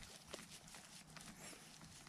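Near silence: faint rustles and a soft tick from a hand handling a porcini mushroom in grass.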